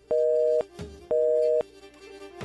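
Telephone busy tone on a phone-in line after the caller hangs up: two beeps of about half a second each, a second apart, each a pair of steady tones.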